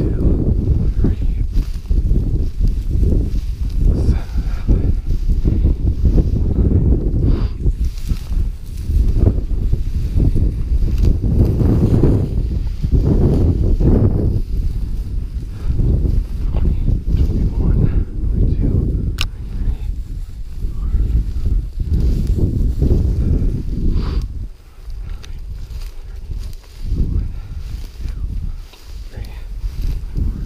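Footsteps through tall dry grass and snow as a person paces off a distance, the grass swishing against the legs, under heavy wind rumble on the microphone. It quietens a few seconds before the end.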